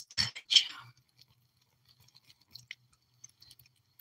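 Two short breathy mouth noises close to the microphone in the first second, then near silence with a few faint scattered ticks.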